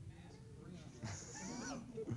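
A faint voice from across the room, with a wavering pitch, about a second in, over steady room hiss.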